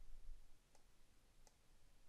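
Two faint computer mouse clicks, about three-quarters of a second apart, over near-silent room tone.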